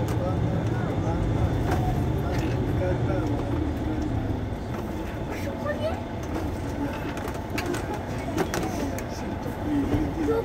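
Mercedes-Benz Citaro C2 city bus's diesel engine idling at a stop: a steady low hum that eases off about halfway through. Indistinct voices can be heard over it.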